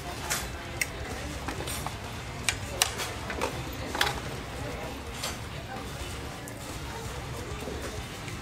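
Forks and knives clinking and scraping on plates during fast eating, with a handful of sharp clinks, the loudest about two and a half to four seconds in, over a steady murmur of background voices.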